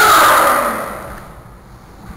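A martial artist's loud, drawn-out yell that fades out about a second in.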